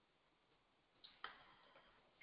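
Near silence, broken by two faint, short clicks in quick succession a little after a second in.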